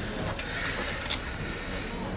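Steady background room noise of a large visiting room, with two brief sharp clicks, one early and one about a second in.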